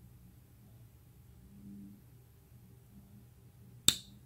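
Bestech Ascot folding knife's blade snapping shut into the handle: after near-quiet handling, the detent pulls the blade in with one sharp click near the end. A very positive snap, the sign of a strong detent.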